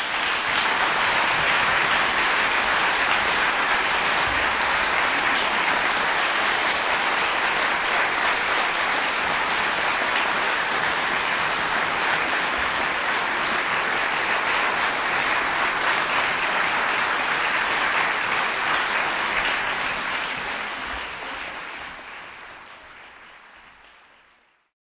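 Concert-hall audience applauding after a string performance, a steady dense clapping that fades out over the last few seconds.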